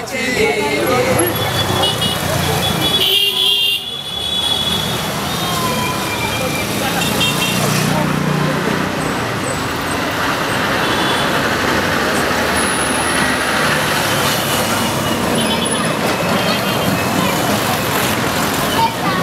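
Women chanting and clapping for the first few seconds. Then steady city road traffic: cars and motorcycles passing, with a few short horn toots and voices.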